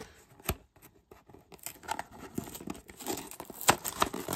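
A small cardboard blind box handled with a single click, then torn open: cardboard tearing and crackling through the second half, with a sharp click near the end.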